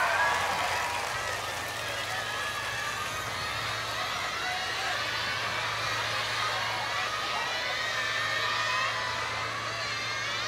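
Live concert crowd cheering and screaming once a song has finished, many high voices overlapping, with a steady low hum underneath.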